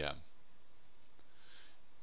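A man's voice finishes a word, then a pause of faint room tone with a single soft click about a second in and a quiet breath before he speaks again.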